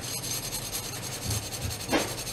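Rubbing and scraping handling noise, with two short low bumps just past the middle and a brief sharp scrape near the end.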